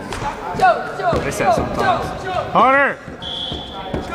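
Spectators shouting in a school gym during a volleyball game, with thuds of the ball among the voices. A loud drawn-out yell rises and falls about two and a half seconds in, and a faint steady high tone sounds near the end.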